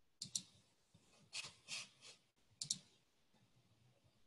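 Faint computer mouse clicks. There is a double click about a quarter second in, three softer clicks a little after a second, and another double click shortly before three seconds.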